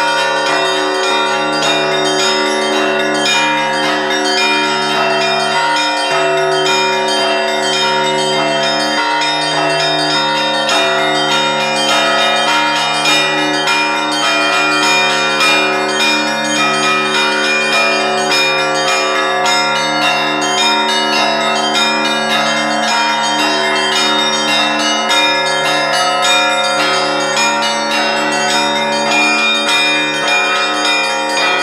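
Russian Orthodox bell ringing: a set of fixed church bells rung by hand with clapper ropes. Small bells give a fast, continuous run of strikes over the long, steady ringing of the lower bells, whose notes change every few seconds.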